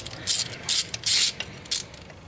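Hand ratchet with a small socket clicking in about four short bursts, one on each back-stroke, as it undoes the bolt holding the O2 sensor connector bracket.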